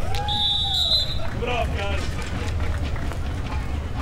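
Steady low wind rumble on the microphone, with a drawn-out shout and scattered voices of the crowd and players after the point, and a short high whistle-like tone in the first second.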